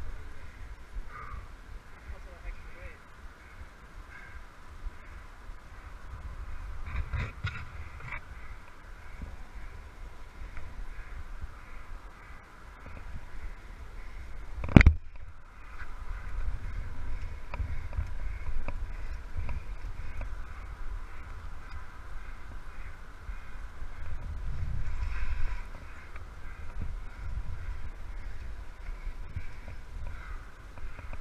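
A climber's scuffing and shifting against granite, picked up by a helmet-mounted camera under a steady low rumble of wind, with one sharp knock about halfway through.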